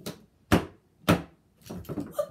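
Plastic wrestling action figures slammed by hand onto a toy wrestling ring's mat: three sharp thuds about half a second apart, followed by softer handling clatter near the end.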